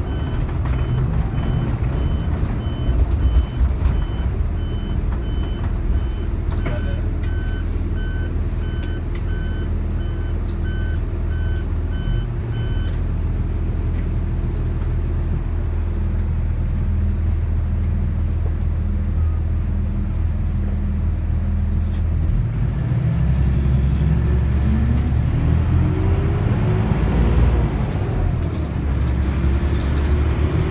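Bus engine and road noise heard from inside the cabin while driving. An electronic warning beeper sounds about twice a second for the first dozen seconds, then stops. Later the engine's pitch rises as the bus accelerates.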